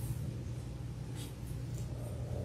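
Quiet room tone with a steady low hum, and a few faint, brief paper rustles in the second half.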